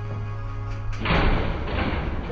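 Background music, then about a second in a loud thud and rattle of a body hitting a row of metal school lockers.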